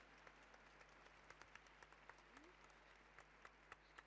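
Faint, scattered hand claps from a distant crowd, a few irregular claps a second.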